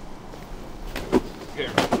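A wet towel flicked like a whip, giving two sharp snaps in quick succession about a second in.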